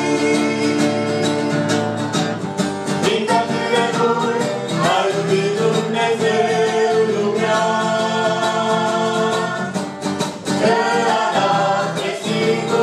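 A family vocal group sings a Romanian worship song live, with instrumental accompaniment and no break.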